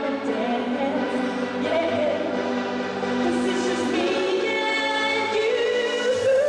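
A woman singing a pop song live into a handheld microphone over backing music, holding long notes.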